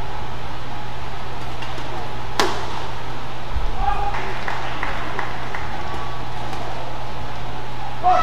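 Badminton play in a hall: a single sharp racket strike on the shuttlecock about two and a half seconds in. It sounds over a steady hum of hall noise with voices, and a few short squeaks and clicks follow about four to five seconds in.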